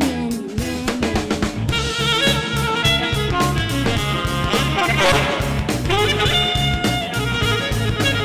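Live rock band playing an instrumental passage with no singing: electric guitar, bass guitar, saxophone and a steady drum kit beat.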